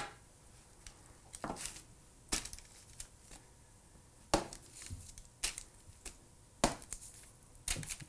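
Metal kitchen tongs clicking and tapping as salmon fillets are flipped over one by one on a parchment-lined sheet pan: a handful of short, sharp clicks at irregular intervals.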